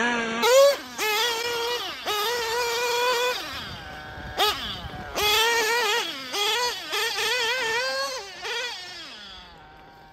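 Two-stroke nitro glow engine of a TLR 8ight XT 1/8-scale truggy revving hard, a high-pitched whine that rises and falls with repeated throttle blips. It grows fainter near the end as the truggy drives off into the distance.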